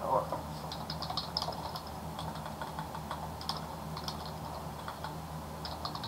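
Typing on a computer keyboard: short, irregular runs of key clicks over a low steady hum.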